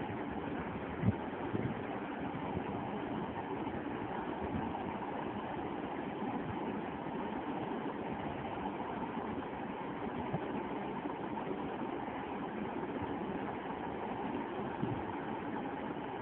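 Steady background noise with no distinct tone, and a single short knock about a second in.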